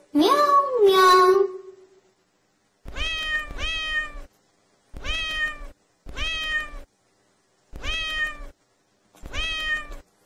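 Domestic cat meowing repeatedly. A long meow that rises and then falls comes first, and after a short gap a run of about six shorter meows follows, each dropping in pitch, roughly one a second.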